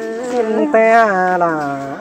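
Unaccompanied Thái (Tai) folk singing: a voice holds long, drawn-out notes that waver and slide downward in pitch.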